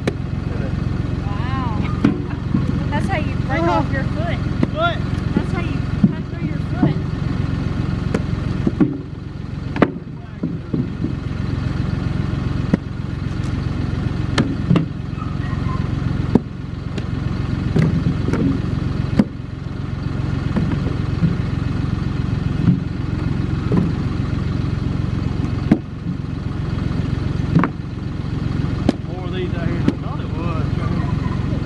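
A John Deere tractor's engine idling steadily, with sharp wooden knocks every few seconds as round wood slices are tossed into its steel loader bucket and onto a pile.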